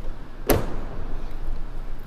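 A 2022 GMC Sierra Denali pickup's door shutting once, about half a second in, with a single solid thunk.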